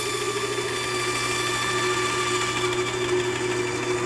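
Bandsaw running with a steady hum while its blade cuts through the thumb of a mannequin hand.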